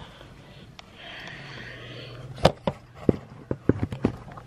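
Handling noise of a handheld camera being moved: soft rustling, then a quick run of sharp knocks and taps in the second half, the first one the loudest.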